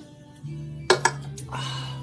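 Background music plays while an empty aluminium beer can is set down on a table about a second in, making two or three sharp clinks. A short breathy hiss follows.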